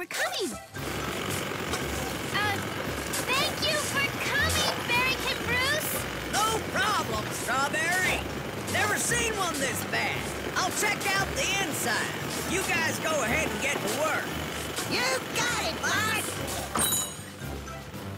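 Cartoon construction din: a steady machine-like rumble with many squeaky, high-pitched wordless voices over it and background music. The din eases about a second before the end.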